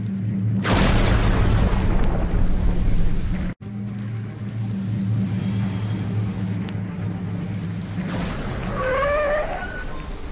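Radio-drama car sound effect: a loud rush as the car pulls away about half a second in, fading over a few seconds into a steady low drone of the moving car, then a wavering tyre screech near the end as it brakes to a stop, with music underneath.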